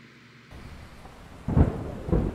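Thunderstorm sound effect: a rain-like hiss comes in about half a second in, then a loud clap of thunder rumbles near the end.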